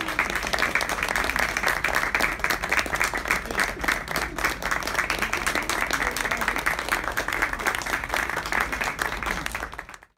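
A small audience applauding steadily at the end of a poetry reading, with a laugh at the start. The applause fades out at the very end.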